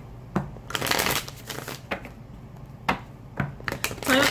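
A Gilded Tarot deck being shuffled by hand: a rustling stretch of cards about a second in, with several sharp slaps of the cards later on.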